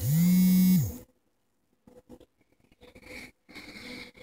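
A cat's low, drawn-out meow lasting about a second, rising, holding, then falling in pitch. Softer breathy sounds follow about three seconds in.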